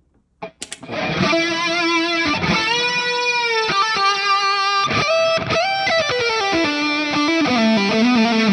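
Distorted electric guitar playing a lead solo line through a Hotone Ampero II Stage rock preset with its solo boost switched on. It starts about a second in and holds single sustained notes with vibrato and bends, then steps down in a descending run near the end.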